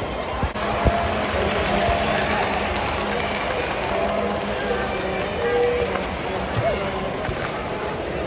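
Hockey arena crowd chatter with music over the PA, a held low note running through most of it. There is a sharp knock about a second in.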